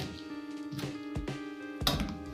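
Soft background music: sustained notes over a light, steady beat.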